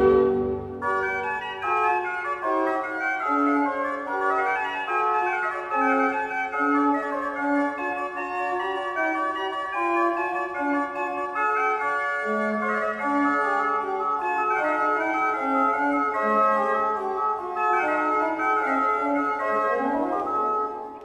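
Organ playing a fast solo passage in the Rondò: Allegro of a classical-era organ concerto, with quick, evenly held notes in the middle and upper range and no bass. The full orchestra drops out just under a second in, leaving the organ alone.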